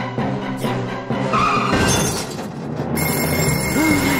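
Animated-film score music playing, with a short burst of noise about a second and a half in and a high, steady ringing tone that starts near the end.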